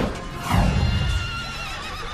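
A horse whinnying in a wavering call that starts about half a second in and lasts about a second, over music, with a falling whoosh and low thud just before it.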